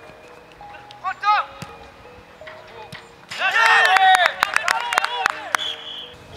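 Men's voices shouting and calling out on a football training pitch, loudest from about three seconds in, with a quick run of sharp knocks among them.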